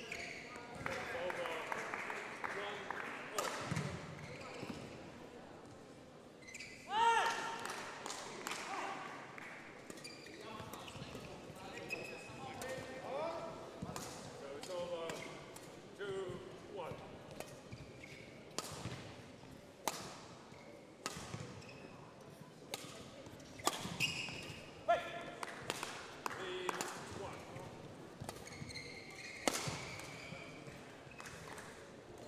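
A badminton rally: sharp cracks of rackets striking the shuttlecock at irregular intervals, mixed with the squeaks of court shoes on the hall floor as the players move and lunge.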